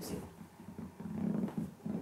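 A person's low, wordless hum or murmur, strongest from about a second in.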